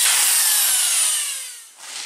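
Handheld electric drill boring a screw hole through galvanized steel tube. Its high whine falls in pitch as the motor winds down, and the sound fades out about a second and a half in.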